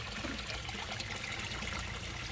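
Water trickling and splashing steadily into a small koi pond.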